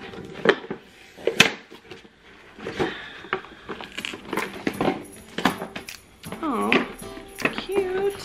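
A boxed stationery set being opened by hand: scattered clicks, taps and rustles of the box and its packaging being worked open.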